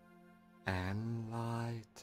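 A soft, steady background drone from a binaural-beat meditation track. About halfway in, a man's voice says one slow, drawn-out word for roughly a second.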